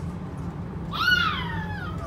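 Carriage rumble of a Transilien line H commuter train running along the track. About a second in comes a single high-pitched cry that rises quickly and then slides down over about a second, louder than the rumble.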